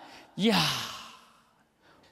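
A man's breathy vocal exclamation, a drawn-out "iya" like a sigh, falling in pitch and fading away over about a second.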